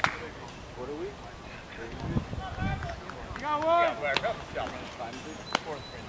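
Indistinct voices calling out across an open ball field, some drawn out, with one sharp crack right at the start and another about five and a half seconds in.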